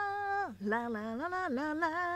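A woman singing close into a handheld microphone: a long held note that breaks off about half a second in, then a run of shorter notes stepping up and down in pitch.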